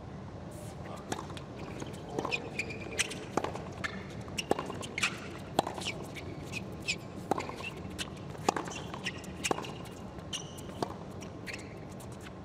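A tennis rally on a hard court: a serve, then the ball struck by racquets and bouncing back and forth in sharp pops about every half second to second, with short shoe squeaks between the hits.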